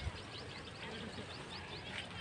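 Birds chirping: a rapid run of short, high, upward-sliding notes repeating over a soft steady background.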